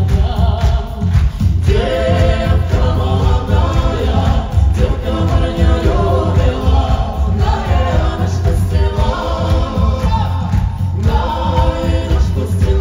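Live folk-rock band playing a Russian folk song, with several voices singing together over a steady bass and drum beat. The singing comes in about two seconds in and breaks off briefly near the end.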